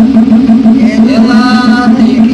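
Ceremonial drums of a Terecô gira start up abruptly with a loud, fast and even beat, and about a second in a voice comes in singing a chant over them.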